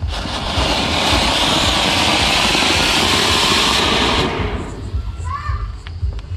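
Anar, a ground fountain firecracker, spraying sparks with a loud, steady hiss for about four seconds, then dying away.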